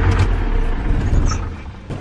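Dodge pickup truck's engine running, heard from inside the cab as a steady low rumble that drops away in the last half second.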